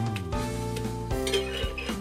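Background music with sustained tones, over a few light clicks and scrapes of a spatula pressing a roti against a nonstick tawa.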